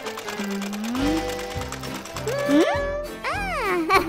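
Cartoon sewing-machine sound effect: a rapid, even mechanical ticking of the needle running, over light children's background music. In the second half, sliding, warbling pitched cartoon sounds come in and are the loudest part.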